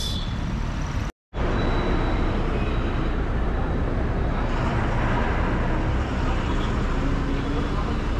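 Steady low rumble of a diesel coach engine idling close by, mixed with road traffic noise. The sound cuts out completely for a moment about a second in.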